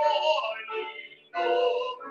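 A man singing a solo in long held notes; one phrase fades and a new phrase begins about two-thirds of the way through.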